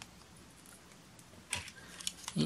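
A sharp plastic click about a second and a half in as a part of a Bumblebee transforming toy car snaps into place, with otherwise only faint handling.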